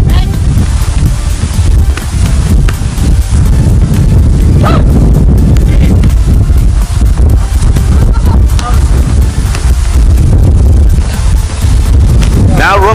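Wind buffeting the microphone: a loud, steady low rumble that covers the field sounds.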